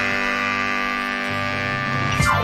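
A rock band's held final chord ringing out, with guitar sustaining over a steady bass note and slowly fading.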